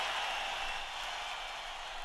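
The fading tail at the end of an electronic rave track: after the beat and bass have stopped, a hiss of noise dies away.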